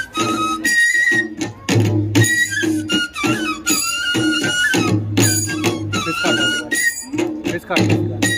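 Live Tripuri folk music for the Hojagiri dance: a high, wavering flute melody over a barrel drum beating a steady repeating rhythm, with sharp percussion strokes between the drum beats.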